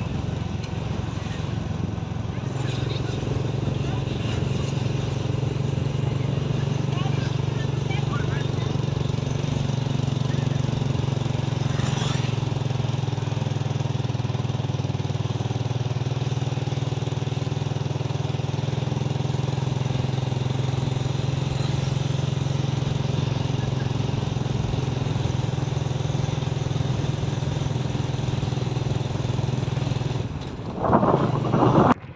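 Steady drone of a moving vehicle's engine and road noise, heard from on board while driving.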